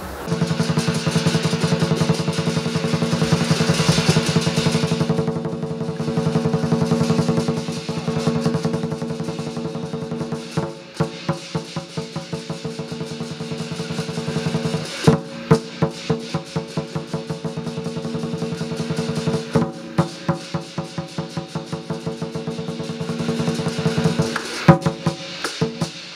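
Lion dance percussion: a Chinese drum beaten in a rapid roll over the sustained ringing of cymbals and gong, starting suddenly. From about ten seconds in it settles into a beat of separate, sharply accented strikes.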